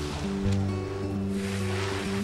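A slow song playing on a film soundtrack, sustained notes over a bass line that changes every half second or so.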